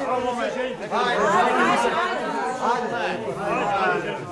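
Many voices talking and calling out over one another at once: a group chattering.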